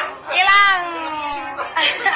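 A person's voice: one long, high-pitched cry lasting about a second, rising briefly and then sliding down in pitch.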